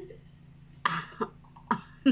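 A woman coughing with her mouth full of food: one short cough about a second in, followed by two smaller ones.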